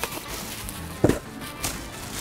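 Bubble wrap rustling as a cordless tool battery is pulled out of it, with short handling knocks about a second in and again shortly after, over quiet background music.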